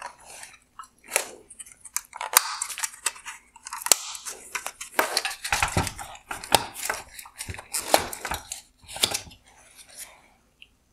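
Black plastic shroud being worked off a bi-xenon headlight projector: a run of irregular plastic clicks, creaks and scrapes as the rear retaining clips let go, with several sharper cracks among them.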